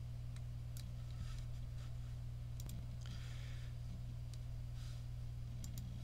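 Faint clicks and a few short, soft scrapes of a pen tapping and sliding on a SMART Board interactive whiteboard, over a steady low electrical hum.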